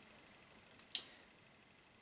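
Quiet room tone with a single short, sharp click about a second in.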